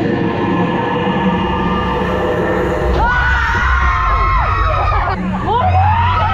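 Eerie ride soundtrack with held tones and a low rumble on the Tower of Terror drop ride. About three seconds in, riders break into high, wavering screams as the ride car drops, with one long scream near the end.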